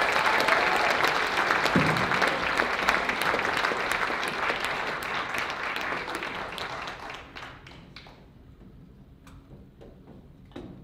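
Audience applauding after a big band number ends. The applause dies away about seven to eight seconds in, leaving a few scattered claps.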